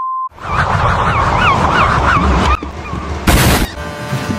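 A steady test-card tone of about 1 kHz under colour bars cuts off. A loud honking sound follows, wobbling up and down in pitch about four times a second for roughly two seconds. A short burst of hiss comes near the end.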